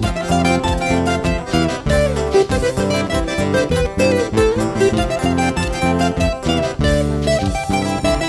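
Huayno band playing an instrumental break: a lead guitar picks a quick melody over electric bass and keyboard.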